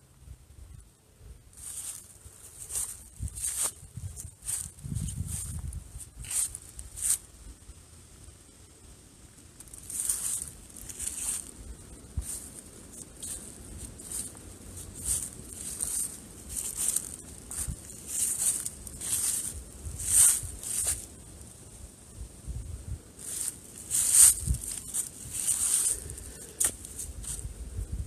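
Footsteps crunching through dry grass and leaf litter, irregular steps about one or two a second, with a short lull about eight seconds in.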